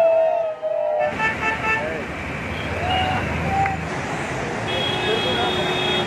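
Steady rushing roar of water pouring through the open spillway gates of a dam, with people's voices at the start. A vehicle horn toots several times about a second in, and a longer horn note sounds near the end.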